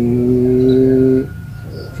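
A man's voice holding one long, level hesitation sound while searching for a word, ending about a second in, followed by a quieter pause.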